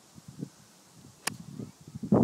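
Golf driver striking a ball off a tee: a single sharp crack about a second and a quarter in.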